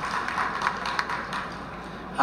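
Steady background hiss of the room with a few faint taps, fading slightly.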